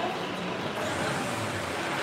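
Steady background noise of a large indoor public hall, with no distinct sounds standing out.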